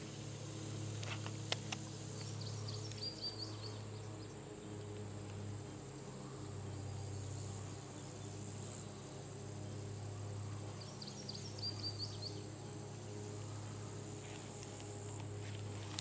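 Quiet outdoor ambience at a pond: a steady high insect drone, with two short runs of high chirps, about three seconds in and again around eleven seconds, over a low steady hum.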